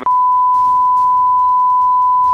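A loud, steady, single-pitched censor bleep cuts in sharply as the voice in a recorded phone call breaks off, masking a word of the conversation.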